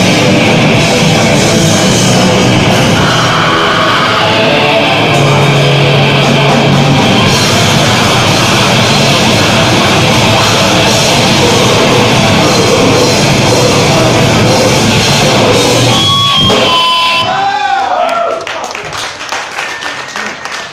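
Grindcore band playing live at full volume, guitars and drums packed densely together. The song stops about seventeen seconds in, leaving a few brief ringing tones and lower-level room noise.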